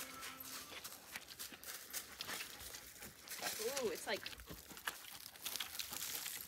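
Boots stepping in wet mud: a quiet, irregular scatter of small squelches and clicks.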